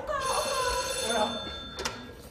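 Telephone ringing: one ring of about a second and a half with steady high tones, with a voice over it and a short sharp click near the end.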